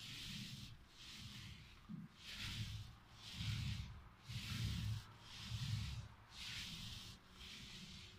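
Paint roller on an extension pole rolling a primer-and-white-paint mix onto a drywall ceiling: a rhythmic swishing, about one stroke a second, back and forth.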